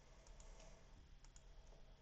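A few faint computer mouse clicks over near-silent room tone.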